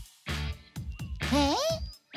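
Cartoon background music with a steady bass line that breaks off briefly at the start. Near the end there is a short wavering, rising pitched sound, a character vocal or sound effect.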